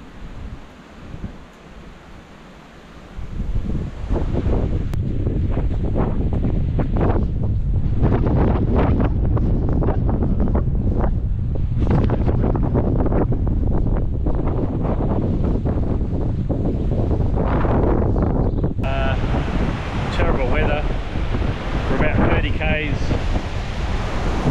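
Gale-force wind buffeting the microphone, a loud, heavy rumble that starts suddenly about three and a half seconds in and keeps up with uneven gusts.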